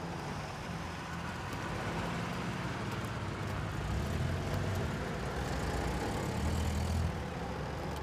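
Car engine running at low speed as the car pulls up, with a steady low rumble under a wash of background noise.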